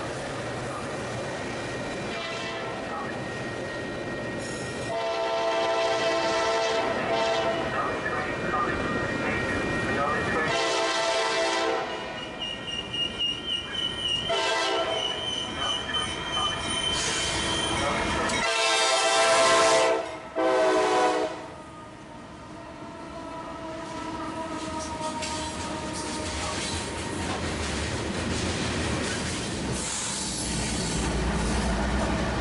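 Norfolk Southern freight locomotive's air horn sounding repeated blasts: a long one starting about five seconds in, a short one right after, then two more around twenty seconds. Between them a high wheel squeal is heard, and later the steady rumble of freight cars rolling by.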